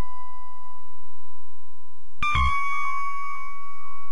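Soundtrack music: a held pure tone, joined about halfway through by a sudden struck, chime-like note with a low thud beneath it that keeps ringing.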